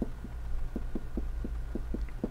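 Marker pen writing on a whiteboard: a quick run of short, soft taps from the pen strokes, about five a second, over a steady low hum.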